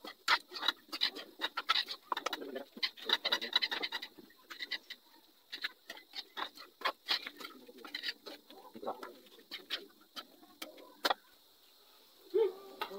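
Metal spoon scraping and knocking against a wok while chopped goat skin is stirred over a wood fire: irregular clicks and scrapes, busiest in the first few seconds and sparser later.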